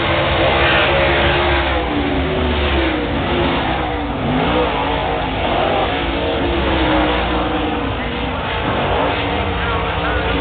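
Engines of a field of late model race cars running a heat race, several pitches rising and falling as the cars accelerate and pass by.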